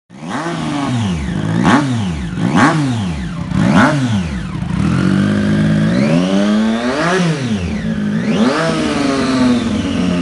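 Triumph Street Triple's inline-three engine being revved while the bike stands still: three quick, sharp throttle blips in the first four seconds, then a longer run of slower revs that rise and fall twice.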